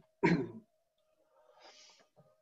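A person coughing once, sharply, the last of a short run of coughs, then a soft breath near the end, over a faint steady hum on the call's audio.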